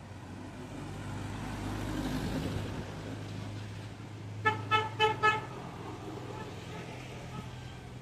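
A vehicle horn honks four short toots in quick succession, about halfway through. Street traffic rumbles underneath and swells as a vehicle passes in the first few seconds.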